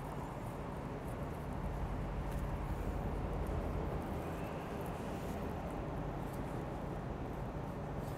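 Knife slicing and trimming hard fat off a raw brisket on a wooden cutting board: soft, faint cutting strokes over a steady low room noise.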